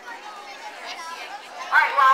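Background chatter of a group of children talking, with one louder, higher-pitched voice breaking in near the end.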